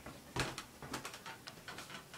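Handling noise from a handheld camera carried while walking: a single knock about half a second in, then light clicks and rustles.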